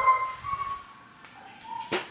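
A Belgian Malinois–pit bull mix dog whining: a thin, high whine that shifts in pitch, dropping a little past halfway and rising again near the end.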